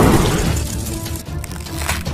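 Cartoon explosion sound effect fading out over the first half second, then background music with held notes. Near the end comes a sharp crack as Captain America's shield shatters.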